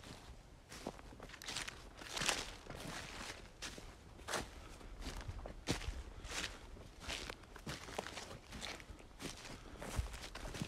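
Footsteps on dry, dead grass at a steady walking pace, about three steps every two seconds, each step a short rustle.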